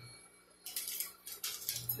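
Sheets of paper pattern rustling as they are handled, in a few short bursts after a moment of near silence.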